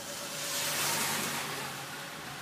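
Heavy wind-driven rain falling on a small car's roof and windshield, heard from inside the cabin as a steady hiss that swells about a second in and then eases off.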